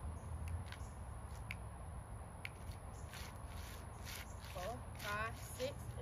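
A line dancer's feet stepping and scuffing on the floor, as scattered short taps and shuffles over a steady low hum, with a brief faint voice near the end.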